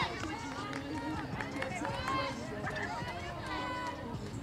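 Several voices shouting and calling out at once, from spectators and players during a play.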